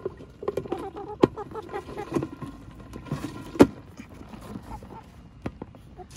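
Blue plastic lid being fitted onto a white plastic chicken waterer: scattered knocks and clicks of plastic on plastic, the sharpest about three and a half seconds in.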